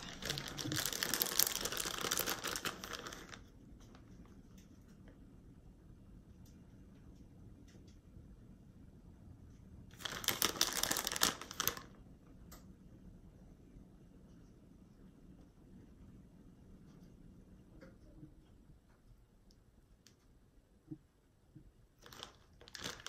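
Plastic bag of shredded cheddar crinkling as it is handled, for about the first three seconds and again for about two seconds near the middle; in between, only faint room sound and a few light taps.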